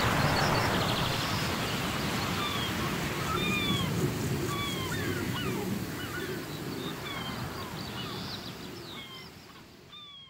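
Many short, high chirps, like birdsong, gliding up or down in pitch over a steady noisy hiss, the whole sound slowly fading out.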